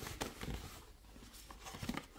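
Faint handling of cardboard and paper packaging: a few light taps and rustles near the start and again near the end, quieter in between.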